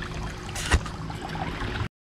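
Shallow creek water running and gurgling over rocks, with one sharp tap about three quarters of a second in. The sound cuts out abruptly just before the end.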